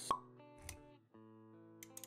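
Intro music of sustained chord tones, with a short sharp pop sound effect just after the start and a brief low thump about two-thirds of a second in.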